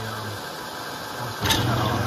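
Garage-door-opener motor of a homemade brass annealer starting with a sharp click about one and a half seconds in, then running with a steady hum as it turns the case-holder plate round to the next station.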